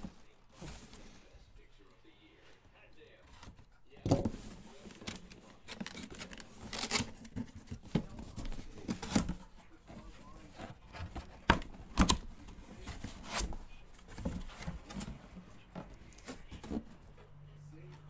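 Cardboard box being opened and unpacked by hand: packing tape and cardboard tearing, with irregular rustles, scrapes and sharp snaps as the packaging is pulled apart. It starts about four seconds in.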